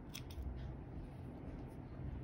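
Thread snips cutting a yarn end: a few faint, short snips in the first half-second.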